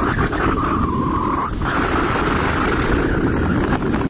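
Wind buffeting the microphone over the open sea, a heavy steady rumble, with a steady mid-pitched hum beneath it that shifts higher about one and a half seconds in.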